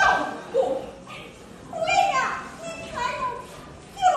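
Stylized spoken dialogue of Min opera performers in Fuzhou dialect: short exclaimed phrases in high voices with sliding pitch, and no accompaniment.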